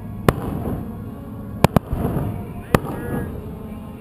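Aerial fireworks shells bursting: four sharp bangs, one just after the start, a quick pair about a second and a half in, and another near three seconds, over a steady background rumble.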